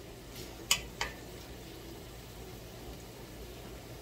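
Vegetables sizzling faintly and steadily in a hot skillet, with two sharp clicks close together about a second in.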